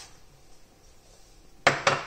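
Kitchenware clatter: a ceramic bowl knocking twice in quick succession against a metal saucepan near the end, as grated cheese is tipped from it into the pan.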